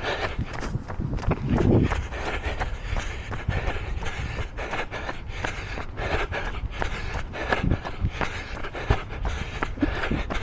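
A runner's footfalls on stone paving at a steady running pace, about three steps a second, over a low rumble of wind on the microphone.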